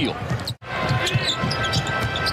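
Court sound of an NBA game: a basketball being dribbled on the hardwood floor amid player and arena noise, broken by a sudden brief dropout about half a second in where the highlight cuts to the next play.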